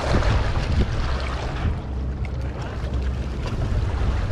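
Wind buffeting an action camera's microphone: a steady low rumble, with a brief burst of higher rushing noise at the start.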